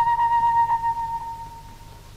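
A flute holds a long note that fades away about a second and a half in, over a faint low drone.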